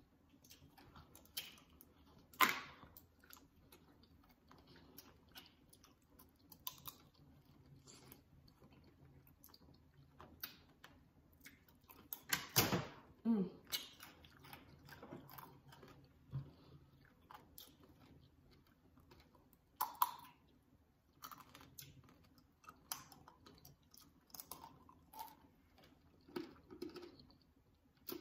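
Close chewing of tanghulu, fruit in a hard candy-sugar glaze: the sugar shell cracking and crunching between the teeth, with scattered small clicks and wet mouth sounds. The sharpest cracks come about two seconds in and again around twelve to thirteen seconds in.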